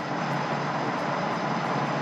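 Steady background hiss of the room and microphone during a pause in the narration, even and unchanging, with no distinct event.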